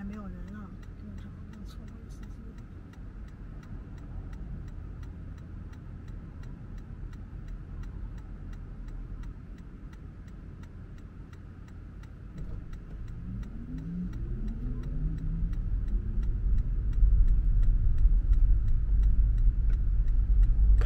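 A car's left turn signal ticking steadily inside the cabin of a Toyota Prius. About two-thirds of the way through, the car pulls away: a rising hum and road rumble grow louder.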